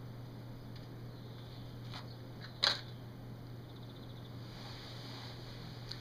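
A Dunhill briar pipe being puffed: a few soft lip pops and smacks at the stem, the sharpest a little before halfway, over a steady low room hum.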